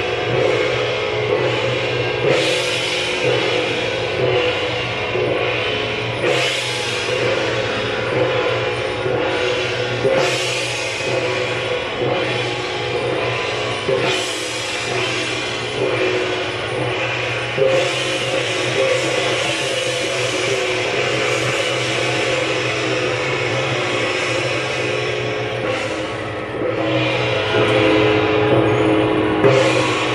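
Taiwanese temple-procession music accompanying a Guan Jiang Shou troupe's performance: a sustained melody that steps between pitches over percussion. A loud crash comes about every four seconds.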